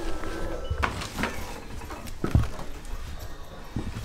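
A house door being opened, with a few scattered knocks and thumps.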